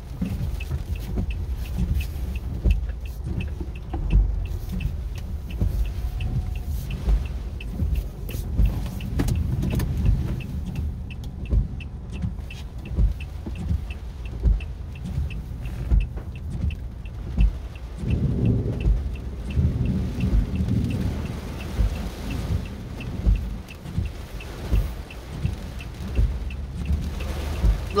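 Inside a stationary car in a rainstorm: the engine is idling with a low rumble, the windshield wipers are sweeping, and rain is hitting the glass. A fast, regular faint ticking runs underneath.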